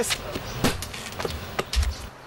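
A sledgehammer blow to the head: a sharp knock about two-thirds of a second in, then smaller knocks and a deep thump near the end as the struck man drops onto the pavement.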